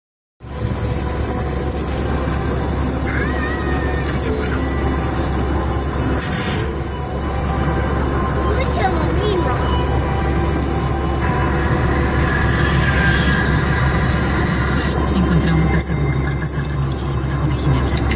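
Steady road and engine noise inside a moving car at highway speed, with a high steady hiss over it until near the end. Faint voices come in during the last few seconds.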